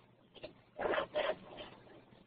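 A few brief scraping noises, the loudest two about a second in, heard through a thin, narrow-band online-meeting audio feed.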